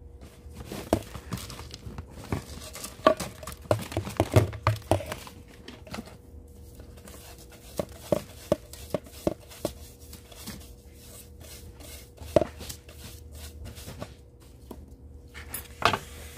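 Scattered light clicks and knocks of repotting gear being handled by hand, busiest in the first five seconds, with a sharper knock about twelve seconds in. A faint steady hum runs underneath.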